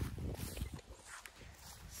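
Soft footsteps walking through wet grass, a series of low thuds.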